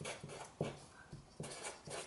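Felt-tip marker writing on paper: a run of short, scratchy strokes, about three or four a second.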